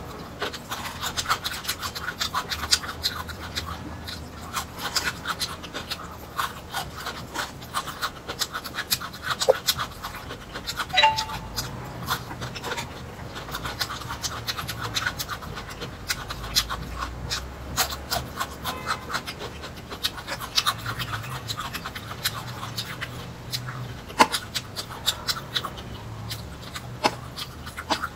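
Close-miked chewing of carrot slices and broccoli florets: a dense, irregular run of short, crisp crunches and mouth clicks.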